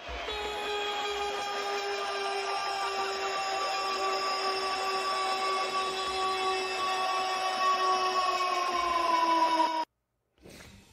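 A sound effect added in editing: a long, steady, droning tone with several overtones over a noisy bed. Near the end it sags a little in pitch, then it cuts off abruptly.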